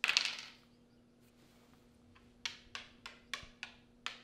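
A pair of dice thrown onto a cardboard Monopoly board, rattling briefly as they land. Near the end a game token is tapped square by square along the board, about five light clicks.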